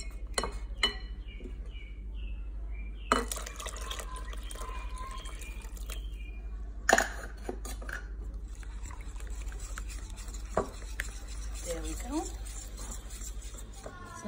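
Wire whisk mixing crepe batter in a bowl as milk is worked in: wet stirring and scraping, with several sharp clinks of the whisk against the bowl.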